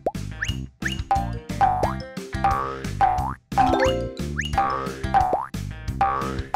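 Bouncy children's cartoon music with cartoon boing jump sound effects, rising swoops that come again and again over the beat.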